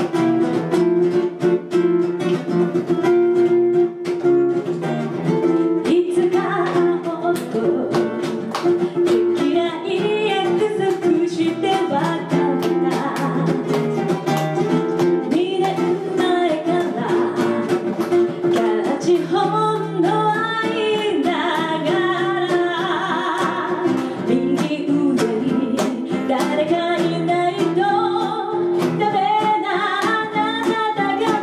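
A woman singing a ballad to fingerpicked acoustic guitar accompaniment, performed live through a microphone. The guitar plays alone at first, and the voice comes in about six seconds in.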